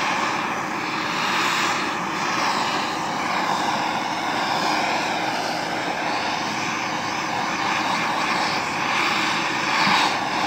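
Handheld gas torch burning with a steady, continuous rushing hiss as its flame is swept over pine boards to scorch the grain.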